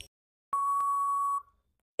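An electronic quiz-timer beep: one long, steady, single-pitched tone that starts about half a second in, lasts nearly a second and then cuts off. It follows shorter countdown blips and marks the end of the thinking time.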